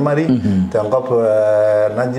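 A man's voice: a short spoken syllable, then a long, steady drawn-out 'ehhh' hesitation sound held at one pitch for over a second.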